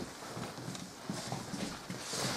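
Quiet room with a few faint footsteps and shuffles on a wooden floor.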